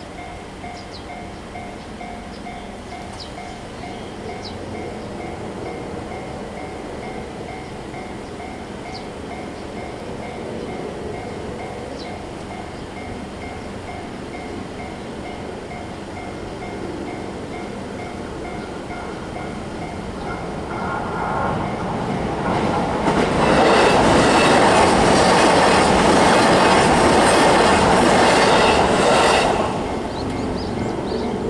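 Japanese railway level crossing warning bell ringing in a steady, repeating two-tone pattern. About 21 seconds in, an electric commuter train approaches and passes over the crossing, growing loud and then cutting off sharply near the end.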